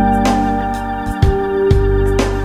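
Electronic keyboard music from a Roland E50 arranger keyboard: sustained organ-like chords over a bass line, with a steady beat of about two strikes a second. The bass changes note about a second in.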